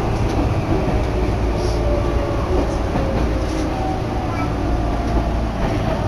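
Tokyu Oimachi Line electric train running, heard from inside the car: a steady rumble with a motor whine that slowly falls in pitch as the train slows into a station.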